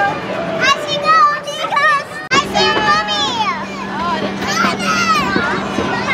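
Excited children's voices, high-pitched and sweeping up and down, with squeals. After a break about two seconds in, a steady low hum runs underneath them.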